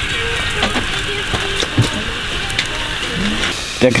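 Sausages sizzling on a grill: a steady frying hiss, with faint voices talking underneath.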